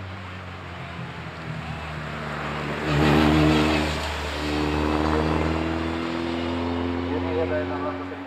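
Formula Opel Lotus single-seater's Opel four-cylinder racing engine under full throttle, loudest as the car passes close by about three seconds in. It then pulls away with its pitch climbing steadily.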